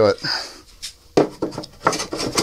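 A few light clicks and knocks as a small switch is worked into a slot in a balsa-wood model aircraft fuselage.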